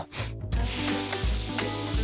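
A steady hissing sound effect that starts about half a second in, over light background music with a regular bass beat.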